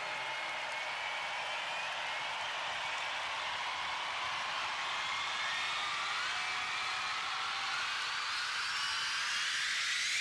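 Outro of a dark techno track: a steady hiss of filtered noise with faint high tones gliding slowly upward, swelling gradually louder.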